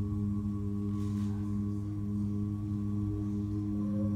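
An a cappella vocal ensemble holding one sustained chord, several voices each on a steady pitch with no instruments. A higher voice joins on a new note near the end.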